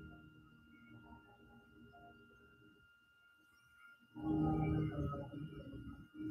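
Near silence with a faint steady high whine, then about four seconds in a slow breath close to the microphone, low and breathy, lasting a couple of seconds.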